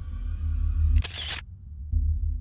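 iPhone camera shutter sound as a selfie is taken: one short click about a second in, over a low steady rumble.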